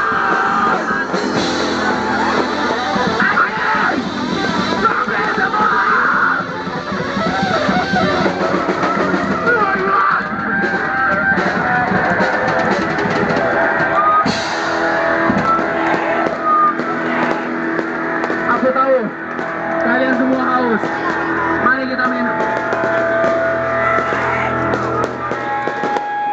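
A rock band playing live and loud, electric guitar and drums, with voices shouting over the music.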